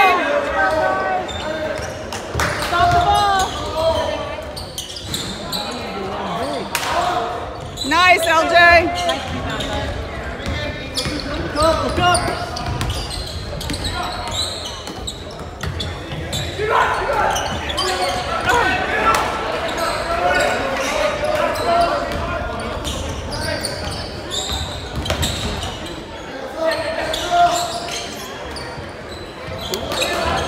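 Basketball being dribbled and bounced on a hardwood gym floor in a large hall, with repeated sharp bounces, over spectators' voices and calls from the stands.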